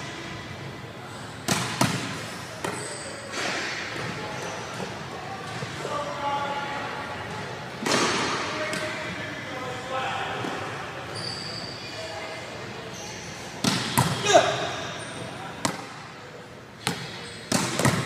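Scattered thuds and slaps on a gym's sports-court floor, each ringing on in the large hall, with the loudest ones about eight seconds in and twice near fourteen seconds. Voices talk in the background.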